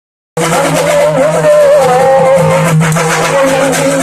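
Urumi melam folk drum ensemble playing loud and fast, the drums' dense beating under a wavering, pitched moaning tone from the urumi drum. The sound cuts in abruptly just after the start.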